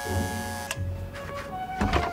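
An electric doorbell buzzer sounding once for under a second, over soft background music, with a dull thump near the end.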